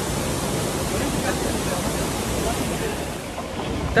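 Steady rushing of water pouring down the steps of a large cascading fountain, with faint voices in the background.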